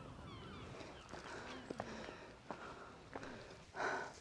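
Faint open-air ambience with a few soft knocks and faint high chirps. Near the end comes a short, louder breathy rush.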